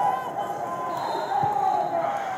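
Indistinct chatter of voices echoing in a large sports hall, with one dull thud about one and a half seconds in.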